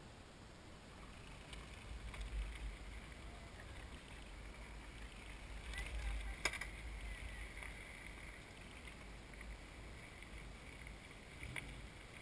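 Wind rumbling on the microphone of a camera set low at the roadside while a group of bicycles ride past, faint throughout and loudest about six seconds in as one rider passes close, with a sharp click at that moment and another near the end.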